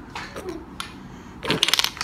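Hard toy dominoes clicking against each other as they are picked up and placed, with a few separate clicks and then a quick clattering rattle of several pieces near the end.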